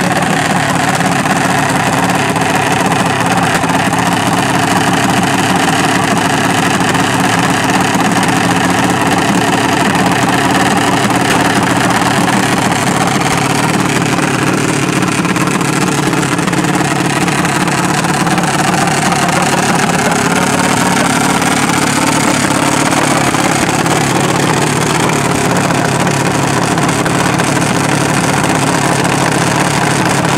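Junior dragster single-cylinder engines idling steadily, the pitch wavering up and down for a few seconds about halfway through.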